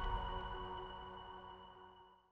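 Final chord of an electronic TV theme tune ringing out and fading away, with a thin high tone held over it until the end.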